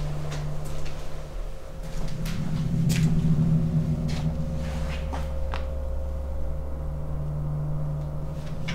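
A steady low hum that swells about two seconds in and again near the end, with scattered light clicks and crunches of footsteps on a debris-littered floor.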